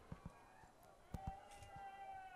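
Near silence: faint field ambience with a few soft taps and, in the second half, a faint held tone.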